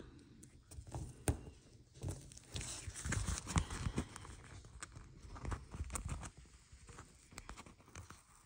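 Stickers being peeled from a sticker sheet and pressed onto paper planner pages: soft paper rustling with irregular light taps and clicks from fingertips and nails.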